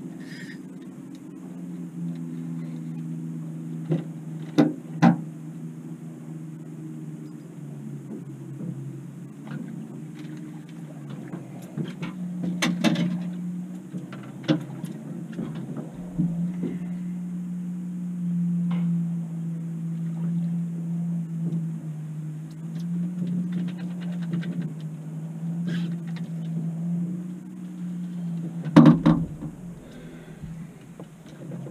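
Boat motor running steadily at low speed, a constant hum. Several sharp knocks and clatters on the aluminium boat as a bass is netted and landed, the loudest just before the end.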